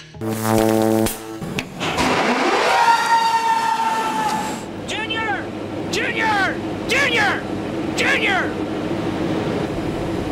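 A machine starts up with a rising whine that levels off and keeps running with a steady hum. Over it a man shouts four times, about once a second, after a short held musical tone at the very start.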